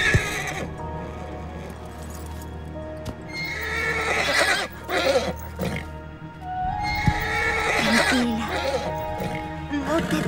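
A horse whinnying twice, about four and seven seconds in, in distress with its leg caught between rocks, over background music.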